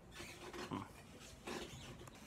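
A man's brief, wordless 'hmm', hummed through closed lips, followed by another short vocal sound about a second and a half in.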